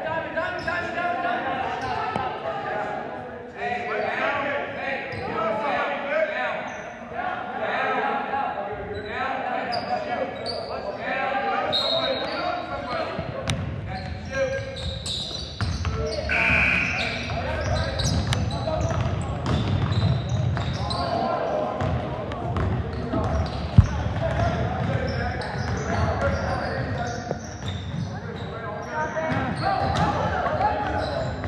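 Basketball game in a gymnasium: a basketball bouncing on the hardwood court and players' feet, under steady chatter from spectators and players. One sharp knock stands out about three-quarters of the way through.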